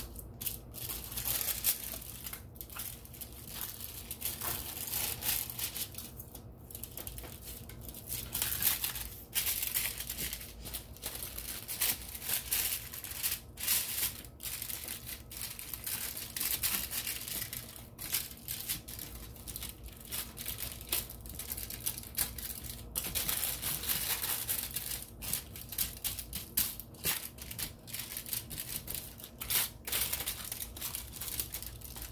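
Hands squishing and kneading raw ground-beef meatloaf mixture in a baking pan lined with aluminium foil, the foil crinkling under it, irregular and on and off.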